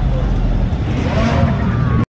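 Mercedes-Benz E-Class sedan's engine and exhaust rumbling steadily as the car rolls slowly past at walking pace.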